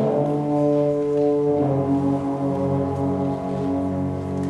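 Concert wind band playing long held chords, heavy in low brass, with a change of chord about one and a half seconds in.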